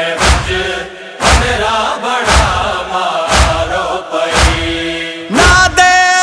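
Noha lament: male voices chanting a slow melody over a heavy thud about once a second, the beat that keeps the chest-beating (matam) rhythm. A long held note comes near the end.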